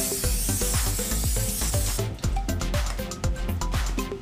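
Aerosol can of canola oil cooking spray hissing steadily, stopping about two seconds in, over background music with a steady beat.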